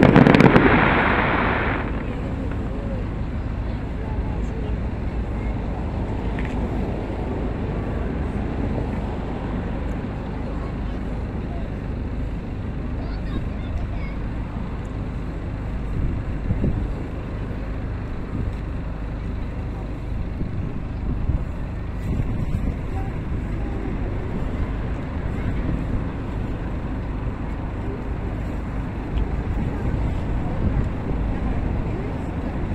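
Aerial firework shell bursting with a loud bang right at the start, its rumble dying away over about two seconds. After that, a steady low background with a few faint pops.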